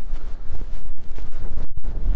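Wind blowing across the phone's microphone: a loud, uneven low rushing noise that rises and falls in gusts.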